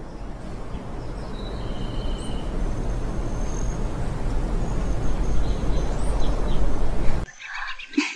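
Birds chirping and whistling over a steady rushing background noise that slowly grows louder, then cuts off suddenly near the end.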